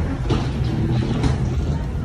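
Steady low rumble of carry-on luggage wheels rolling along an airplane jet bridge floor, with a few light footfalls.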